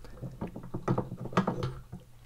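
Tailstock of a Proxxon PD 250/E mini lathe being slid by hand along the lathe bed's ways: metal scraping with a string of irregular small clicks as the loosened tailstock clamp moves.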